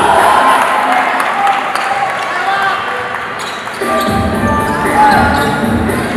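Basketball game sound in an arena: a basketball bouncing on the hardwood court, with repeated thumps from about two-thirds of the way in, over crowd noise and voices.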